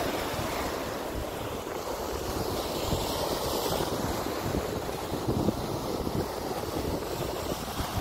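Sea waves breaking and washing up a sandy beach, a steady rush of surf with wind buffeting the microphone.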